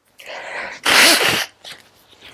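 A man sneezes once: a short breath in, then a single loud sneeze about a second in.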